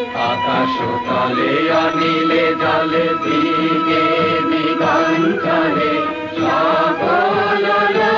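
Devotional music with chanting: long held sung notes over instrumental accompaniment, with light rhythmic strikes.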